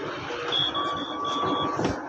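Electronic beeper sounding a quick run of short, high beeps, about five a second, over a steadier lower tone, lasting about a second.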